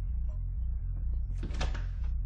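A door being worked at its handle, a short clunk about one and a half seconds in, over a low, pulsing music drone.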